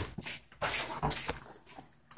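A dog close by, heard in a few short breathy spells.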